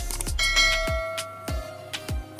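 A bell-like chime sound effect rings out about half a second in and fades over about a second, as a subscribe-and-notification-bell animation plays. Background music with a steady beat runs underneath.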